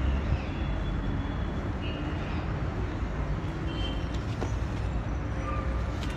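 Steady low rumble and hiss of distant city traffic, with a few faint, brief high tones in it.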